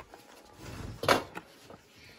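Old paper photographs rustling as they are handled and swapped in the hands, with one brief sharper swish about a second in.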